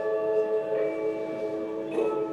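Generative electronic music with bell-like mallet tones. Several notes ring on together, a new higher note joins about three quarters of a second in, and another is struck near the end. The notes come from rotating geometric shapes translated into musical notes.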